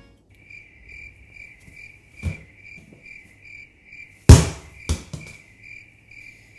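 Cricket chirping in an even rhythm, about two and a half chirps a second, the stock comic 'silence' sound effect. Over it come a few thumps: a small one about two seconds in, a loud one a little after four seconds and a smaller one just after.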